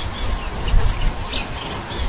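Small birds chirping in quick short high notes, several a second, over a low rumble.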